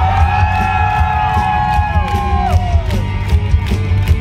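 Rock band playing live at full volume, with steady bass and drums. Over it, several long held notes bend and glide, mixed with crowd whoops, and die away about two and a half seconds in.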